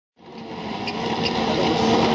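Touring autocross cars' engines running together on the start grid, held at steady revs while they wait for the start lights. The sound fades in over the first second or so.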